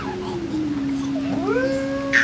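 Two young children's voices holding long, sliding notes at the same time, one low and steady, the other swooping up sharply about halfway through.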